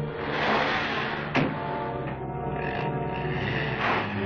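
Orchestral film score plays under a car door being shut with one sharp slam about a second and a half in.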